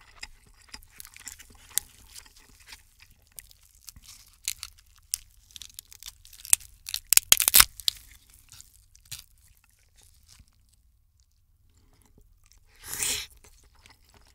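Close-miked eating sounds: crab shell cracking and crackling between gloved hands, with a run of crackles that is loudest about seven seconds in. A short, louder noisy burst comes near the end.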